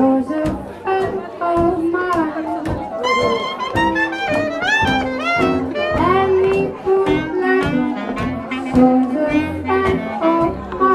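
A live hot-jazz band: clarinet and trumpet playing interweaving melody lines over a rhythm section with a steady beat. Around the middle of the stretch the clarinet runs up in quick rising phrases.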